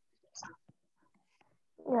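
Quiet speech only: a faint, whispered word about half a second in, then a short spoken 'yeah' near the end.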